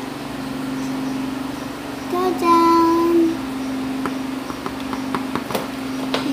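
Small plastic toy pieces clicking as they are handled, over a steady low hum. About two seconds in, a child's voice holds one note for about a second.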